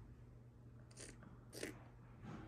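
Near silence, with two faint, short scratchy mouth sounds about a second and a second and a half in: a child tugging a thread wrapped around her loose baby tooth.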